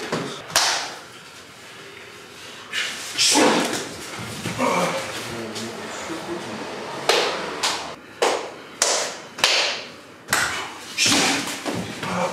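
Sumo practice bouts: thuds and slaps of heavy bodies colliding on the clay ring, mixed with the wrestlers' shouts and grunts. It starts sparse and becomes a quick run of short impacts and cries, about two a second, from about seven seconds in.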